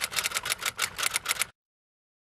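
Typewriter keystroke sound effect: rapid mechanical clacks, about seven a second, typing out on-screen text. It cuts off abruptly into dead silence about one and a half seconds in.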